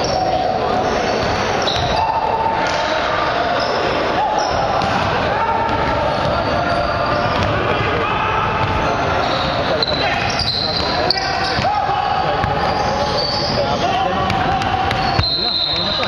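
A basketball bouncing on a hardwood gym floor during play, with voices echoing around a large gymnasium.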